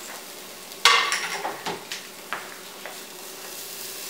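Kitchenware clattering over a steady low hiss: a loud ringing knock about a second in, then a few lighter clicks, as the plate and utensils are handled around the electric pressure cooker's inner pot.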